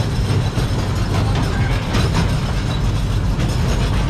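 Miniature park train running along its track, heard from aboard an open passenger car: a steady low rumble with light rattling of the cars.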